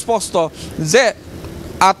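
A man speaking Assamese into a microphone in short phrases, with faint road traffic noise underneath in the pauses.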